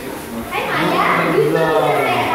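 Young children's voices and chatter around a pool, with high-pitched calls from about half a second in.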